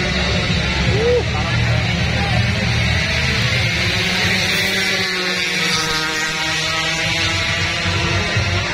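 A motorcycle engine note climbing slowly in revs through the second half, heard over a deep thumping bass from the event's loudspeakers and the voices of the crowd.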